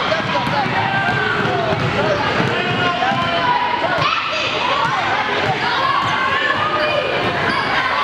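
A basketball is dribbled on a hardwood gym floor, its bounces coming through a steady din of players and spectators shouting and talking.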